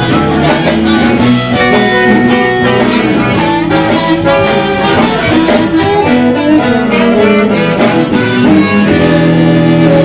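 Live blues band playing, with a harmonica cupped against a hand-held microphone taking the lead over electric guitar, keyboard and drums.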